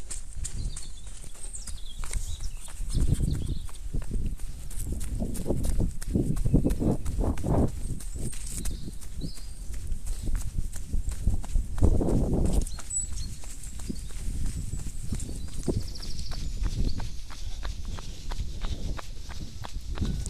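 Running footsteps on a dirt trail in a quick, steady rhythm, picked up by a body-worn camera, with louder low bursts now and then, the loudest about twelve seconds in.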